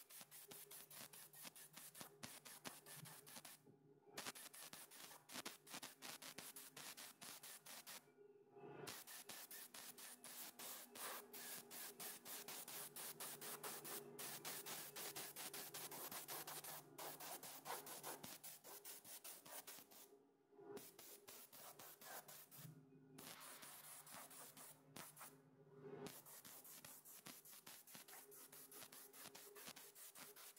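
Compressed-air spray gun hissing faintly as it sprays PVA (polyvinyl alcohol) release agent onto a fiberglass mold, with several brief breaks where the trigger is let off. A low steady hum lies underneath.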